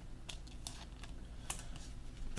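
A few faint, sparse clicks and ticks of trading cards being handled and flipped in the fingers, over a low steady hum.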